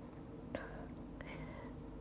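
Quiet room tone with faint breath and mouth sounds from the lecturer, about half a second and a second in.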